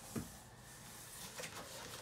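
Faint handling of a cardboard shipping box and the plastic-wrapped box inside it, with a short soft tap just after the start and a fainter one later.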